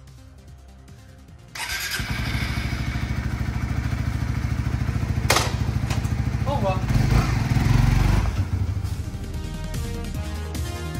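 Suzuki GSX-S125's single-cylinder four-stroke engine starting about a second and a half in and then idling through its stock exhaust. It gets louder for about a second around seven seconds in and settles back. There is a sharp click about five seconds in.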